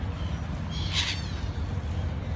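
A gull gives one short call about a second in, over a steady low rumble.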